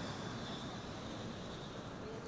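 Faint, steady city street ambience: a low, even traffic hum with a thin high tone running through it.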